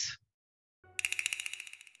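A bell-like ringing, likely an edited-in sound effect, starts about a second in. It is a rapid, evenly pulsing high ring that fades out over about a second.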